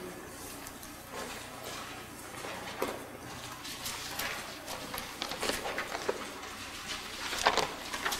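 Paper pages of a Bible being leafed through at a lectern: soft, irregular rustles and light taps, a little busier near the end, while the passage is looked up.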